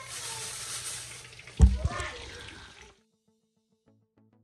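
A thin plastic bag crinkling and rustling as hands work it, over a steady hiss, with one loud thump about one and a half seconds in. The sound cuts off just before three seconds in, and soft music begins near the end.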